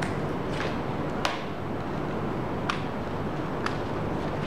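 Steady background hiss with a few light clicks and taps from hands handling a zippered charger case, its power bank and charging cable.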